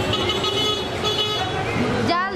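Busy street traffic noise with voices of passers-by. A vehicle horn sounds for about a second, starting shortly after the beginning.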